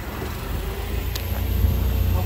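Propane-powered Toyota forklift engine running at a steady low rumble while it raises a crate toward a trailer's back, with a faint click about a second in.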